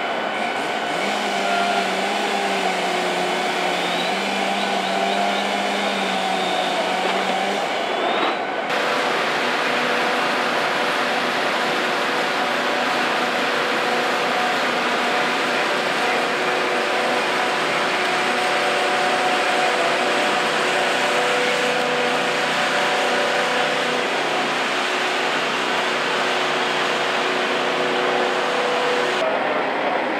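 Fire engines and their pumps running steadily, a loud mechanical drone with several steady engine tones. The tones change abruptly about nine seconds in.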